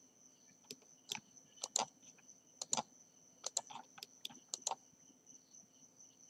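Computer mouse and keyboard clicks, about a dozen short sharp clicks at irregular intervals, over a faint steady high-pitched whine.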